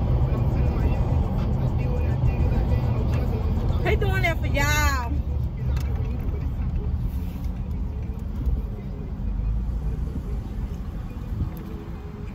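Steady low rumble of a car's engine and road noise heard inside the cabin. About four seconds in, a brief high-pitched voice rises and falls in pitch.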